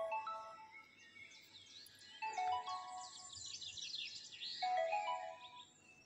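Soft background music: three short phrases of gentle melodic notes about two seconds apart, with quick high chirping like birdsong over them.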